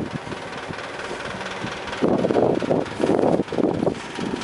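Wind buffeting the camera's microphone while riding, a quieter rush at first, then louder, uneven low rumbling gusts from about halfway through.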